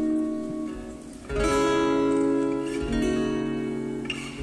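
Acoustic guitar strumming chords that ring on; the first chord fades away, a fresh strum comes in loudly about a second in, and the chord changes again near three seconds.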